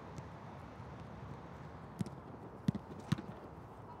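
A few sharp thuds of a football being struck and bouncing on artificial turf, the first about two seconds in and two more within the next second, over a steady low background hum.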